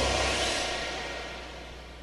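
A rushing hiss with a faint tone underneath, fading steadily away over about two seconds: the dying tail of a dramatic sound effect that follows a mirror being smashed.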